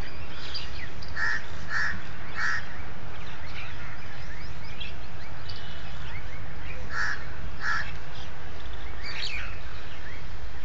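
A bird giving short, loud calls, three in quick succession about a second in and two more around seven seconds in. Fainter small-bird chirps run in between, over a steady low rumble.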